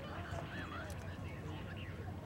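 Faint, overlapping talk of several people in the open, over a low steady hum.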